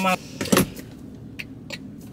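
A single sharp thump about half a second in, followed by two faint clicks, heard inside a car cabin.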